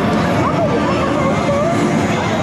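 Loud, steady din of a pachislot parlor: many slot machines' electronic music and sound effects merging into one roar, with voices mixed in.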